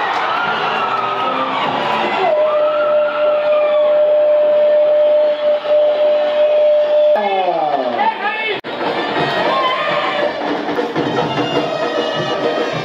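A voice holding one long note for about five seconds, then sliding down steeply, over crowd noise and background music.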